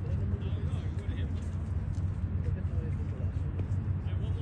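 Faint distant voices over a steady low outdoor rumble.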